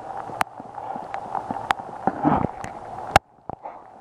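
Steady hiss of rain on a walk along a wet path, with scattered sharp knocks of footsteps and of the camera being handled. The sound briefly cuts out a little after three seconds in.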